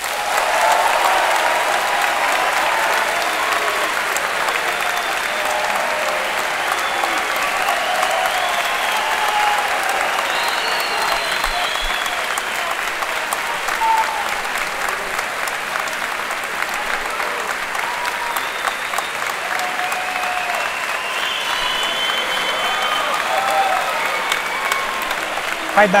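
A large theatre audience applauding steadily and at length, with scattered voices calling out over the clapping.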